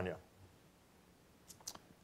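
A man's speech trails off, then near-silent room tone with two or three short faint clicks about a second and a half in.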